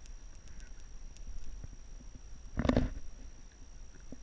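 Shoes stepping and scuffing on rough sandstone, with scattered light ticks and a low wind rumble on the microphone. One louder scuff about two-thirds of the way through.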